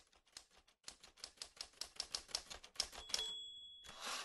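Typewriter sound effect: a rapid run of key clicks, then about three seconds in a single bell ding that rings on.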